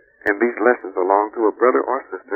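Speech: a voice talking, sounding thin with no treble, with a short click as the phrase begins.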